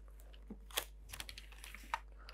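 Faint, scattered clicks and taps of clear plastic set squares being slid and set against each other on drawing paper, about half a dozen short ticks with the sharpest a little under a second in and near the end.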